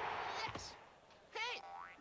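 Cartoon sound effects: a noisy rush that fades out in the first second, then a springy boing with wobbling, rising pitch from about a second and a half in.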